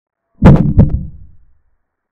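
Chess-board move sound effect for a capture: two low knocks about a third of a second apart, fading out over about a second.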